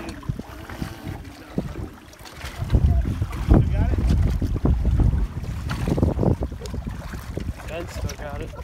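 Wind buffeting the microphone over choppy open water, with a strong gust of low rumble from about three to five seconds in.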